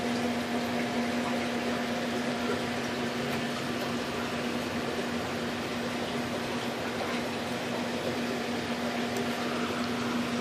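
A steady machine hum: a constant low tone with a fainter higher tone over an even hiss, unchanging throughout.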